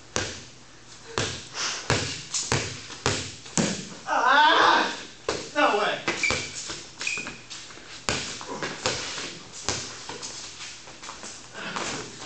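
A small rubber ball is dribbled and bounced on a concrete floor, with sneaker footsteps and knocks echoing in a large, bare garage. A man shouts loudly about four seconds in, and there are a couple of short sneaker squeaks a little later.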